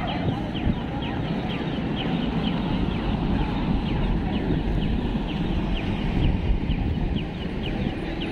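Pedestrian crossing signal for the blind chirping steadily, about two short falling chirps a second, while the crossing shows green for walkers. Underneath is the steady noise of street traffic and a crowd of people.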